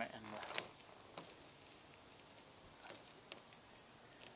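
Faint scattered clicks and crackles of a truck emblem's adhesive releasing as the emblem is pulled slowly off the door by hand.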